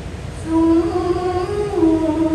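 A male qari's voice in melodic Quran recitation (tarannum). After a short pause, a new phrase starts about half a second in on a long, drawn-out note that climbs a little and falls back near the end.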